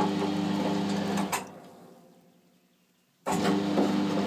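Electric motor of a pellet boiler's feed system running with a steady mains hum and light clicking and rattling. About a second in it stops with a knock and winds down to near silence, then starts again abruptly near the end.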